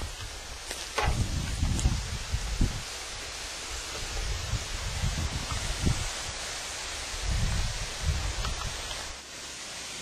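Wind buffeting the microphone in uneven low gusts over a steady outdoor rustle, with a sharp click about a second in.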